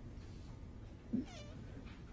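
Quiet room hum through the podium microphone, with one brief, soft voiced sound from a person about a second in.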